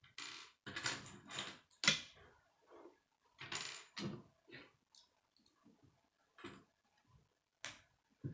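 Plastic K'nex rods and connectors clicking and rattling as they are handled and fitted together: an irregular run of short clicks and rattles, the sharpest about two seconds in.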